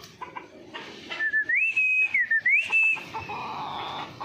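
A person whistling a clear high tone for about two seconds, starting about a second in. It glides up and down twice between a lower and a higher pitch, holding each pitch briefly.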